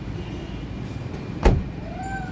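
A single sharp thump about one and a half seconds in, over a steady low rumble.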